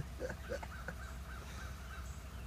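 A bird calling in a quick run of short, evenly repeated notes, over a steady low rumble.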